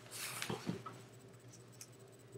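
Faint handling noise: a short soft rustle, then two light taps within the first second, over a faint steady low hum.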